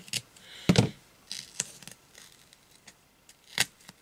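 Scissors snipping through fabric on double-sided tape, with a few sharp clicks and knocks from the scissors and tape being handled on a table. The loudest come about three-quarters of a second in and near the end.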